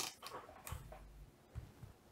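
Faint handling noise: a few light clicks and rustles, the sharpest right at the start.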